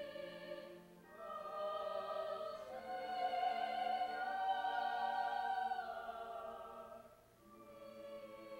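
Small mixed choir singing held chords, accompanied by cello. A phrase swells to its loudest in the middle and fades away near the end before the next phrase begins.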